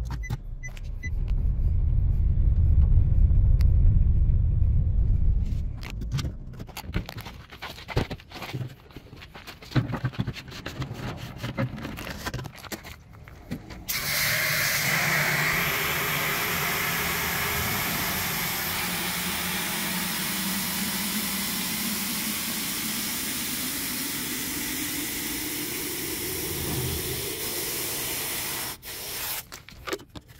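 A car drives slowly with a deep rumble for the first few seconds, followed by scattered knocks and handling sounds. Then water from a garden hose spray nozzle rushes into a clear plastic water jug for about fifteen seconds, its pitch slowly rising as the jug fills, and it cuts off suddenly near the end.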